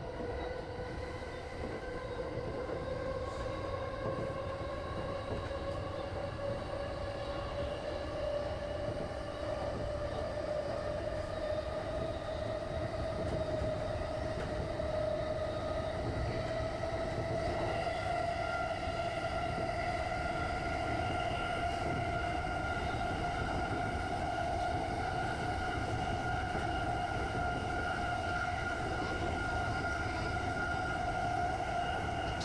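A JR Chuo Line E233-series electric commuter train running and gathering speed. Its traction motor whine rises slowly and steadily in pitch over the constant rumble of the wheels on the rails.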